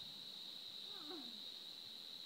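Steady high-pitched insect drone, with one short rising-and-falling call about a second in.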